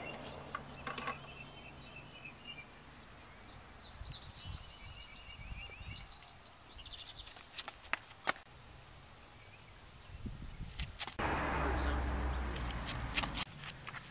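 Small birds chirping in short repeated phrases, with a couple of sharp taps about eight seconds in and a broad rushing noise over a low hum for about two seconds near the end.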